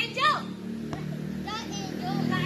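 Children's voices calling out in short high-pitched bursts, near the start and again past the middle, over a steady low background tone.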